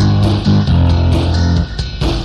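Instrumental music with no vocals: a bass guitar holds low notes that change a few times, with guitar over it.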